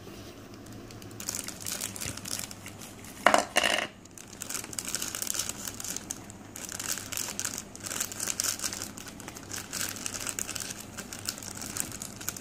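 Clear plastic bag of balloons crinkling and rustling as it is handled and pulled open, in a run of quick crackles. A short pitched sound a little over three seconds in is the loudest moment.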